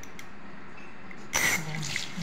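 Kitchen tap turned on about a second and a half in, water suddenly gushing out and running into the sink.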